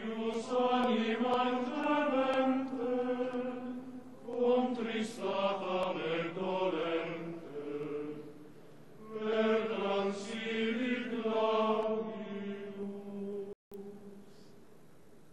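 Male choir singing a sacred chant as a single melodic line, in three phrases with a short pause before the last.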